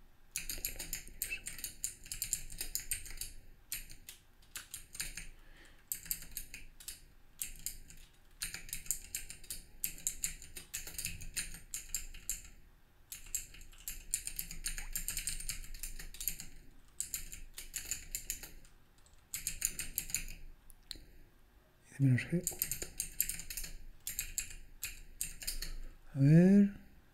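Computer keyboard typing in bursts of rapid keystrokes separated by short pauses. A short voice sound comes near the end.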